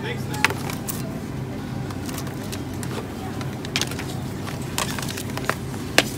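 Supermarket background: a steady low hum with scattered sharp clicks and taps.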